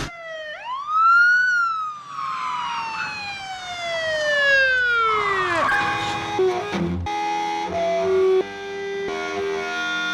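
Police car siren giving one quick rise and then a long, slow falling wind-down that dies out after about six seconds. Music with held notes follows.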